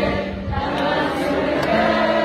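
A crowd of voices singing together over a live band, with a double bass holding a low note that stops partway through and comes back near the end.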